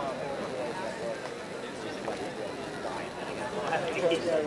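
Indistinct talk from people nearby, with no clear words, growing a little louder near the end.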